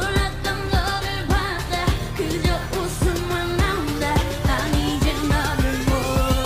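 K-pop song performed live: a woman sings a wavering melody over a steady electronic beat, and about halfway through a synth sweep begins rising steadily in pitch, building up.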